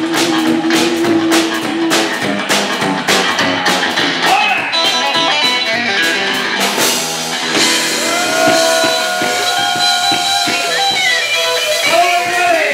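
Live rock band playing an instrumental passage: electric guitar over a drum kit, with dense drum hits in the first half and long held notes that bend from about two-thirds of the way in.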